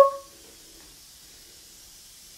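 Faint steady hiss of background noise. In the first moment, the fading end of a short, high-pitched voice-like sound that started just before.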